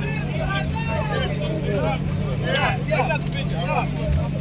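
Off-road pickup truck's engine idling steadily, with no revving.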